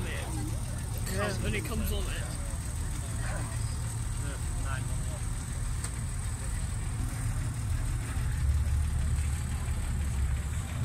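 Porsche 911 flat-six engine running at a low, steady idle as the car rolls slowly past, its rumble growing louder near the end, with crowd voices in the background.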